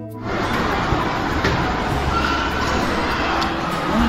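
Slideshow music cuts off at the start, giving way to the noisy background sound of a handheld video recording: a steady, even hiss-like hum with faint scattered clicks and tones.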